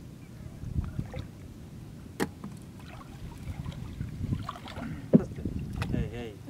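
Shallow river water sloshing and splashing around a wading fisherman and his gill net, over a low rumbling background, with a few short sharp splashes, one about two seconds in and two near the end.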